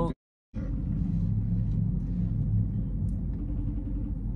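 Steady low hum of a car idling, heard inside the cabin, after a brief cut to dead silence right at the start.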